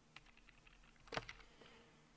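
A few faint computer keyboard key clicks, the clearest a little over a second in, against near silence.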